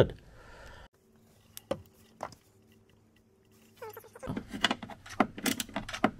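Small irregular clicks and rattles of hands handling wiring connectors and tools in a car's engine bay. There are two single clicks in the first half, then a quick, busy run of them from about four seconds in.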